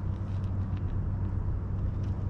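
Steady low mechanical hum, even throughout, with a few faint light clicks over it.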